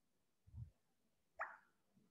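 Near silence: room tone, with a faint low thump about half a second in and one short, sharp click about a second and a half in.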